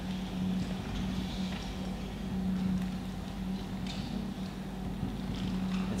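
Whiteboard marker writing on a whiteboard: a few faint short strokes and light taps, over a steady low hum of the room.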